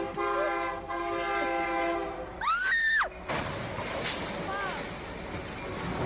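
A freight locomotive's horn blares a steady multi-note chord that stops about two seconds in. A woman gives a high scream that rises and falls, then a noisy crash with a sharp bang as the train strikes the semi-truck, followed by shorter screams.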